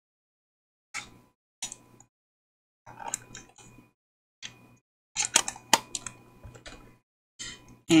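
Clicks and light metallic clatter of a black tin case of pointed metal craft tools being opened and handled on a tabletop: a series of separate taps and clicks, the sharpest about five to six seconds in.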